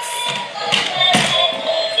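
Battery-operated dalmatian puppy bump-and-go toy playing its electronic music, with a couple of taps about a second in as it moves on the wooden floor.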